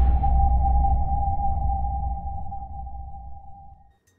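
Logo sting sound effect: one steady ringing tone over a deep rumble, starting sharply and fading out over about four seconds.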